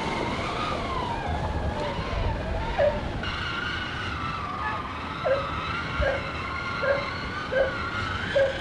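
Whine of a child's battery-powered ride-on toy jeep's electric motor, wavering in pitch, with a short squeak repeating about every three-quarters of a second in the second half.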